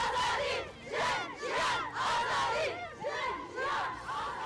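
A group of voices shouting together in unison, in short repeated bursts about every half second, like a chanted slogan or battle cry.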